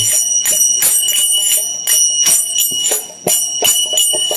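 Karatalas, small brass hand cymbals, struck in a steady kirtan rhythm about three to four times a second, their ring holding a steady high tone, with hand-drum strokes underneath.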